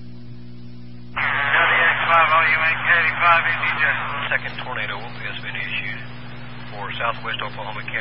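Steady hum and hiss from the radio feed, then about a second in a transmission opens on the amateur radio repeater and a person's voice comes through, cut thin by the radio's narrow bandwidth, with the hum continuing underneath.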